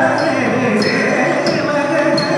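Carnatic music accompanying a Kuchipudi dance: a singer's voice over drum strokes, with a high ringing stroke about every two-thirds of a second.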